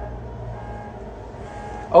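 A steady low rumble, with a few faint thin tones coming and going above it.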